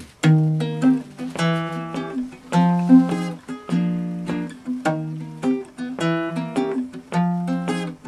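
Baritone ukulele strumming a chord pattern, a new strum about every half second to second, each chord ringing out and fading before the next.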